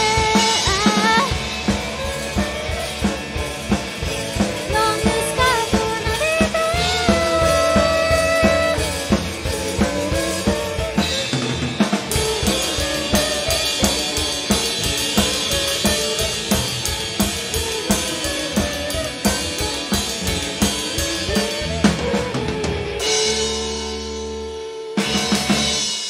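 Live rock band playing: a loud, busy drum kit with cymbals under electric guitars and bass. Near the end the band holds a chord and stops on a last hit as the song finishes.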